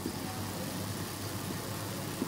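Steady low room hum with hiss, and the faint scratch of a marker writing on a whiteboard.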